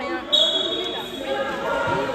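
A basketball referee's whistle: one steady, high blast of under a second, shortly after the start. It sounds over players' voices echoing in a large sports hall.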